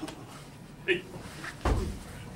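Thuds of wrestlers' bodies and hands against a floor mat during grappling: a sharp knock about a second in, then a heavier, deeper thud near the end.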